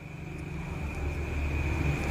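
A low, steady hum that grows louder, under a faint steady high-pitched whine.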